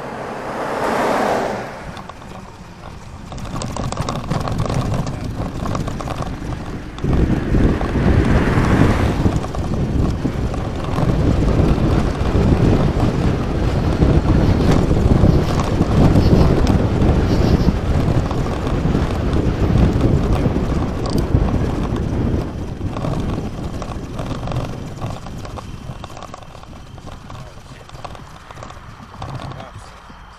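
Wind buffeting the microphone of a bike-mounted camera as the bike rides along a street, building from about seven seconds in and easing off toward the end. A car passes about a second in and another around eight seconds in.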